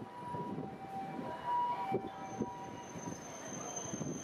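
Hankai Tramway tram 603's steel wheels squealing on the curved terminus track as it rolls in: a pair of steady high-pitched tones, with a higher, thinner squeal joining about two seconds in, over low city traffic noise.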